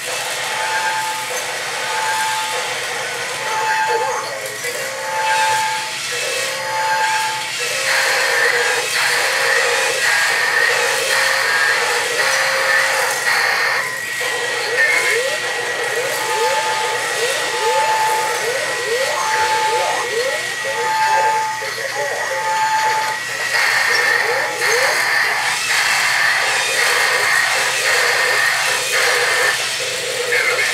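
Battery-powered toy robots walking, their gear motors whirring while their built-in electronic sound effects play: evenly repeated two-tone beeps about once a second, a stretch of quick rising zaps in the middle, and a steady high tone.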